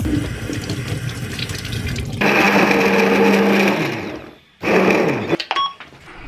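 Kitchen tap running as fruit is rinsed, then an electric blender runs for about two seconds, slows with falling pitch, and after a short stop runs again briefly and winds down.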